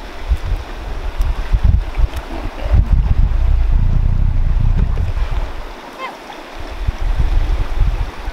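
Wind buffeting the microphone: a loud, gusty low rumble that swells from about three seconds in, eases near six seconds and gusts again near the end.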